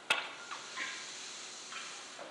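A single sharp click just after the start, then faint, scattered hall sounds.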